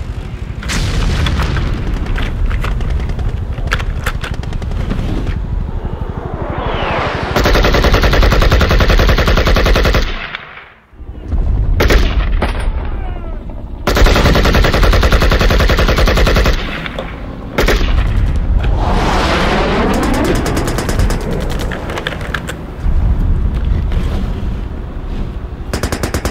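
Battle sound effects: rapid machine-gun and rifle fire with booms, dropping away briefly about ten seconds in and then resuming.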